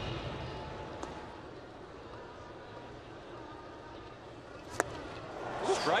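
Ballpark crowd murmur, then a single sharp pop near the end as a pitch smacks into the catcher's mitt on a swinging strike three, after which the crowd noise swells.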